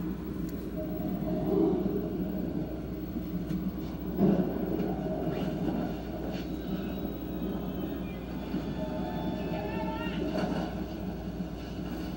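Steady low hum of room noise, with faint, muffled voices in the background.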